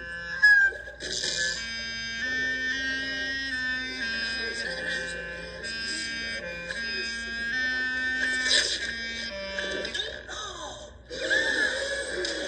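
Clarinet playing a slow melody of held notes with a reedy, buzzy tone. A few sliding pitches come about ten seconds in, and a louder passage starts just before the end.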